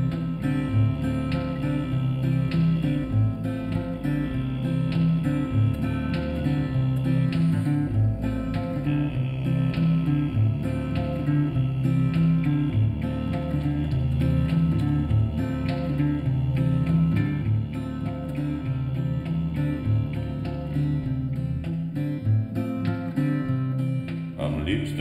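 Instrumental music: guitar playing plucked and strummed chords.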